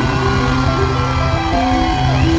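Live rock band playing through the PA: amplified electric guitars and bass with drums, steady and loud.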